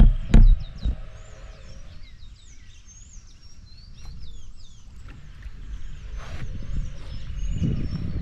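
Small birds chirping repeatedly, many short high calls sliding up and down in pitch, over a low rumble. A couple of loud thumps come in the first second.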